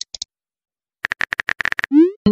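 Simulated phone-keyboard tap clicks from a texting-story app: a short high blip, a pause of about a second, then a quick run of about ten sharp clicks as a message is typed. A rising swoosh begins right at the end.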